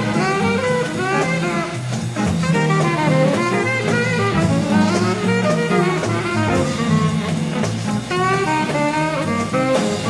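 Small jazz group playing a swing tune: a tenor saxophone plays a melodic line over a walking bass and drums.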